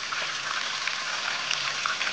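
Oil sizzling around two whole seasoned fish frying in a pan: a steady hiss with scattered small crackles.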